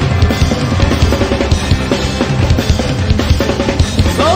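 Rock drum kit played hard and fast, dense bass drum and snare hits with cymbals, in a live concert recording.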